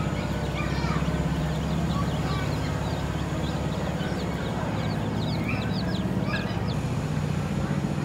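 A brood of baby chicks peeping: many short, high, falling cheeps, overlapping throughout. A steady low rumble runs underneath.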